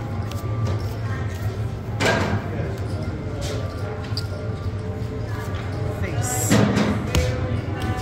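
Background music over table noise at a card table, with two short thuds, about two seconds in and again about six and a half seconds in.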